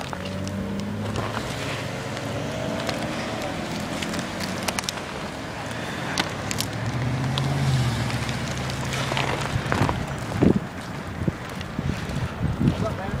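Street traffic: cars passing on the road, their engines swelling and fading, the closest one loudest about seven to eight seconds in, with a few short clicks and knocks.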